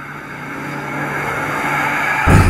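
A whooshing riser sound effect swelling steadily louder, with a low steady drone beneath it, building toward a hit.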